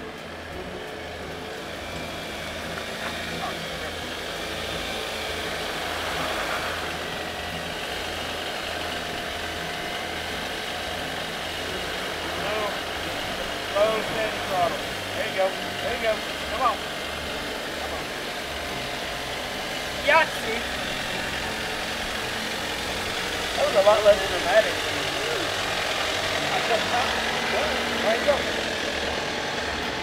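Jeep Wrangler JL engine running at crawling speed as the Jeep climbs up through a rock trough, growing steadily louder as it comes closer. Short voice calls are heard twice in the middle.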